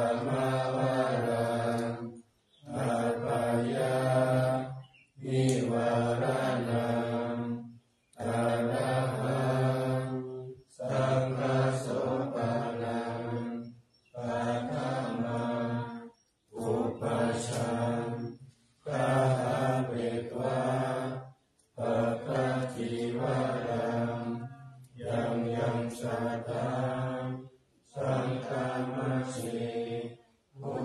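Buddhist morning chanting in Pali by low male voices held on a nearly level pitch. The chant runs in phrases of about two to three seconds, each followed by a short pause.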